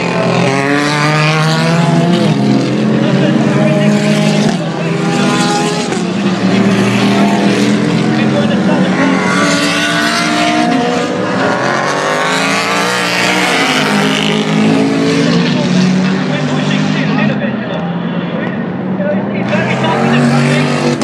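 Race cars, GT and prototype, passing at speed one after another, each engine note rising and then falling as it goes by.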